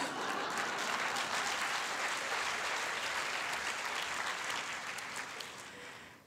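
Audience applause, steady for several seconds and dying away near the end.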